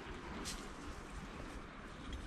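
Faint steady outdoor noise with a brief rustle of brush about a quarter of the way in.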